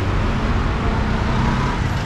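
Street traffic: a steady rumble of vehicle engines passing on the road below.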